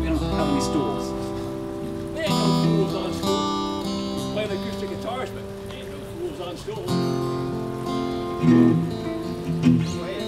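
Live band music: several acoustic guitars strumming chords together, moving to a new chord every few seconds.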